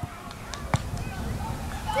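One sharp thud of a football being kicked, about three-quarters of a second in, over a low outdoor rumble.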